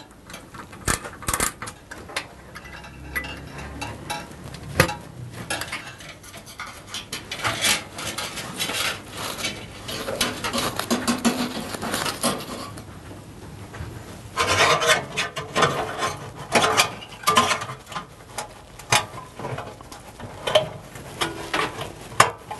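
Irregular metallic clicks, taps and clatter of tools, screws and sheet-metal cooker parts being handled while an electric oven's thermostat and capillary tube are refitted, with stretches of rubbing and rustling between them.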